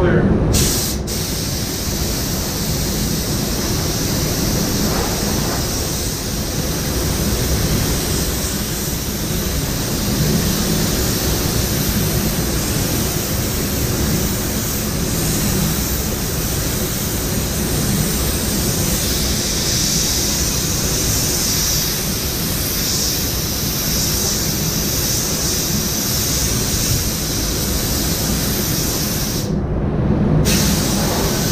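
Compressed-air paint spray gun hissing steadily as it sprays clear coat, over the paint booth's air noise. The hiss cuts out briefly about half a second in and again just before the end.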